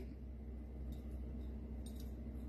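Quiet room tone with a steady low hum and two faint ticks, one about a second in and one near the end.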